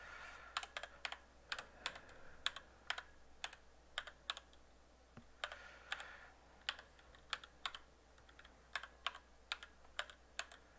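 Computer keyboard being typed on, a product key being entered: faint, irregular key clicks, a few a second, with short pauses between runs.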